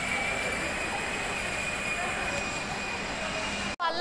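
A steady high-pitched whine over an even mechanical hum and hiss. It cuts off abruptly just before the end.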